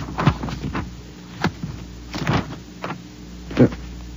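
Paper rustling in several short bursts as the pages of a manual are leafed through, over a steady low hum.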